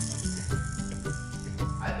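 Light, repeated rattling over steady background music.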